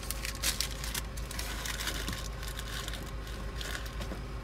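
A handful of paper receipts crinkling and rustling in a hand, in a run of quick crackles, over the low steady hum of the car.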